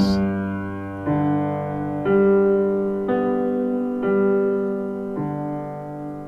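Piano playing a slow left-hand broken G major chord: six single notes about a second apart, going root, fifth, octave, third, octave, fifth, each left ringing as it fades.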